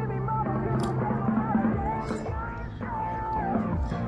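Rock song playing, a male lead singer holding long sung notes over a full band backing.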